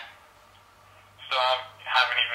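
Speech with a telephone-like quality, one short phrase about a second in and more starting at the end, over a low steady hum.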